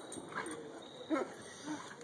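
Two dogs play-wrestling, with about three short pitched calls from them, the loudest just past a second in.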